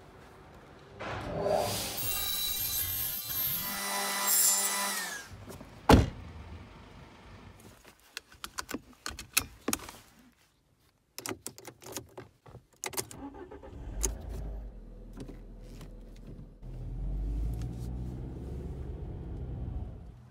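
A run of car sounds: many sharp clicks and jangles of a seatbelt buckle and keys in the middle, then a car engine running with a low rumble through the last few seconds. Earlier, a loud noisy stretch with several steady tones lasts about four seconds, followed by a single sharp knock, the loudest sound.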